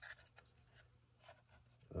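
Faint handling sounds of thin plywood model-ship deck pieces pressed and slid into place on the frame: a few light clicks and soft scrapes against wood and the cutting mat.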